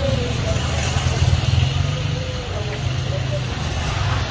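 A motorcycle engine passing close by, a low rumble that is loudest in the first two seconds and then eases off, with voices faintly behind it.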